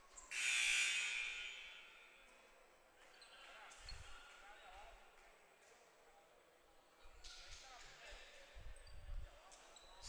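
A basketball bouncing on a hardwood court in a large, echoing gym, with a loud high-pitched burst about half a second in that dies away over a second.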